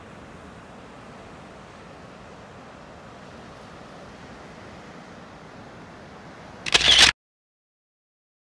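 Steady hiss of surf and wind, then, about seven seconds in, a short, loud camera shutter sound, after which the sound cuts off suddenly.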